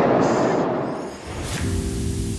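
Steady rushing cabin noise of a Boeing 777-300ER in flight, fading out over the first second. About a second and a half in, background music with long held chords starts.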